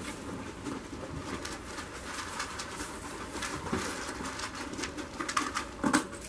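A goat's hooves shuffling and stepping in straw bedding, with continual rustling and a few louder knocks near the end.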